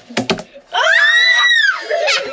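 A few quick hand slaps on a wooden table, then a child's high-pitched shriek of excitement, about a second long, rising and then falling in pitch.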